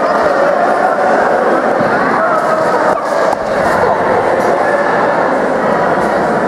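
Spectators and coaches shouting and talking at once during a judo bout, a loud, steady din of many voices with no single voice standing out.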